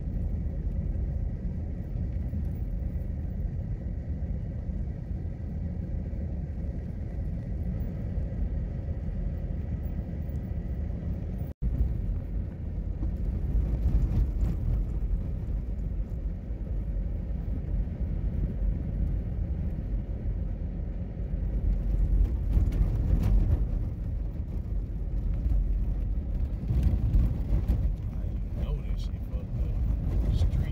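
Steady low rumble inside a moving car's cabin: engine and tyres rolling over a snow-covered street. The sound drops out for an instant a little before halfway, and grows somewhat louder about three quarters of the way through.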